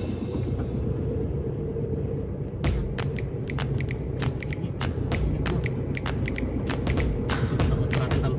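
Low, steady rumble of a manual Nissan van's engine and road noise heard inside the cabin while it is driven slowly, with many sharp irregular clicks starting about a third of the way in.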